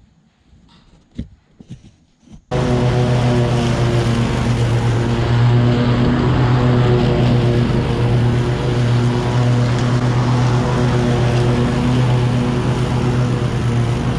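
Toro TimeCutter SS5000 zero-turn riding mower running steadily at high throttle while driven across grass; its loud, even engine sound cuts in abruptly about two and a half seconds in. A few faint clicks and knocks come before it.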